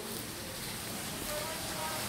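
Faint, distant talking over a steady outdoor hiss.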